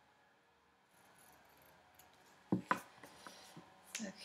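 Scissors trimming construction paper: faint paper rustling, then two sharp snips close together about two and a half seconds in, with a few small clicks after.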